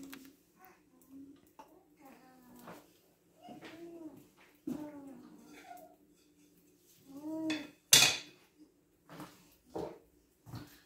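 Kitchen utensils clattering once, sharply and loudly, about eight seconds in, with a few quieter knocks before it. Short voice-like sounds come and go in between.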